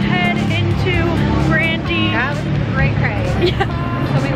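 Excited, high-pitched voices chattering over a steady low rumble of city street traffic.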